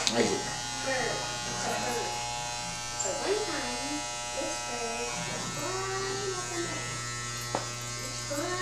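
Corded electric hair clippers running with a steady buzz while cutting hair.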